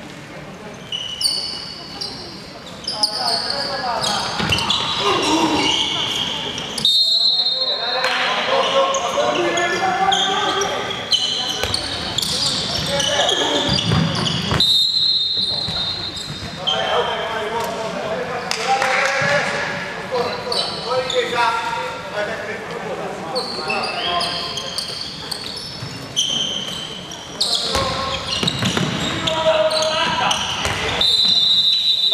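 Handball game play on an indoor wooden court: the ball bouncing and thudding on the floor, with frequent short high-pitched squeaks of shoes and players' voices calling out.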